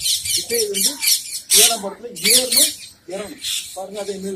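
A voice talking in short, continuous phrases, with a strong hiss in the high end.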